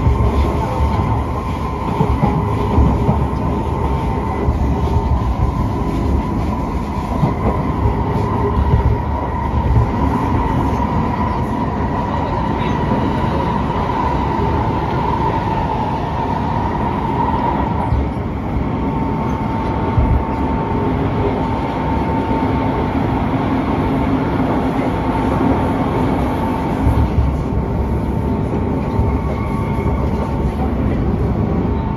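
Inside a moving SMRT C151 metro train (Kawasaki–Kinki Sharyo built) running at speed: a steady low rumble of wheels on rail with a constant high whine throughout.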